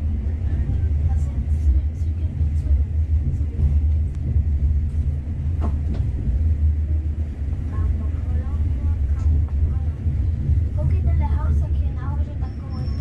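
Bernina Express, a metre-gauge electric passenger train, running with a steady low rumble, heard from inside a carriage.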